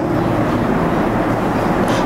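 Steady rushing background noise, fairly loud, with no clear pitch or rhythm.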